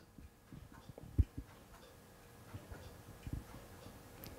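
Quiet room with a few soft, irregularly spaced low thumps and clicks, the loudest a little over a second in: handling noise from a handheld interview microphone.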